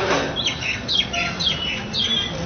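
Small birds chirping: a quick series of short chirps, each sliding downward in pitch, about three a second.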